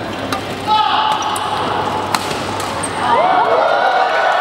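Badminton racket strikes on a shuttlecock, two sharp hits about two seconds apart, over the chatter of a crowd in a large indoor hall. The crowd grows louder near the end.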